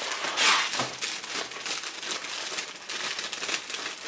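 Clear plastic kit bag with sprues inside rustling and crinkling as it is handled, a continuous crackle that is loudest about half a second in.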